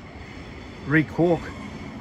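A man's voice speaking briefly about a second in, over a steady outdoor background noise.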